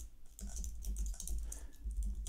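Typing on a computer keyboard: a quiet, irregular run of key clicks.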